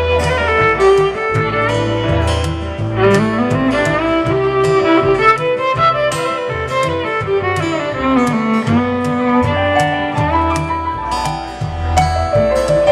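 Live country-bluegrass band playing an instrumental break: a fiddle carries the melody, climbing and then falling back, over strummed acoustic guitar, upright bass and keyboard.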